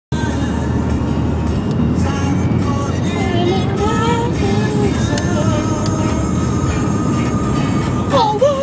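A girl singing a melody inside a moving car. Near the end she holds one long high note, over the steady low rumble of road noise in the cabin.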